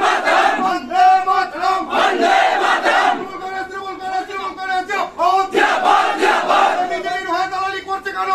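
Crowd of protesters chanting a slogan in unison over and over, the whole crowd's shout swelling loudest twice.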